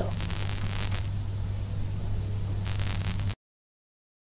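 Steady hiss with a low electrical hum underneath: the background noise of the recording after the voice stops. It cuts off suddenly to dead silence a little past three seconds in.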